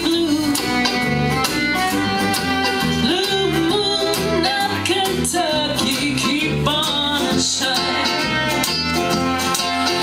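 Live bluegrass band playing an instrumental break, with acoustic guitar and mandolin among the instruments and a steady low beat.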